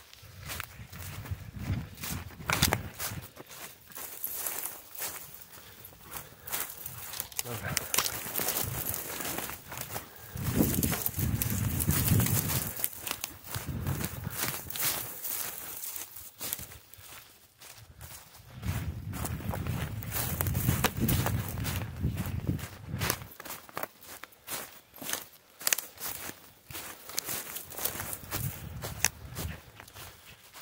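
Hurried footsteps crunching and rustling through dry fallen leaves and twigs on the forest floor, with a couple of stretches of heavy breathing.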